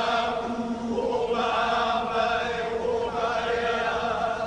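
Men chanting a Hawaiian hula chant together in long held phrases with short breaks between them.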